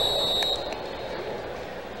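A referee's whistle blowing one steady, high blast that stops about half a second in, over stadium crowd noise that fades away.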